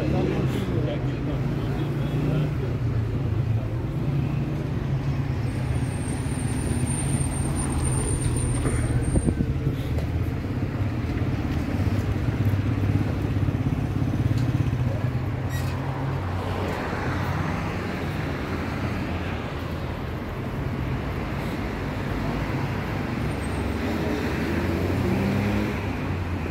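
City street ambience: steady traffic noise from road vehicles, with passersby talking.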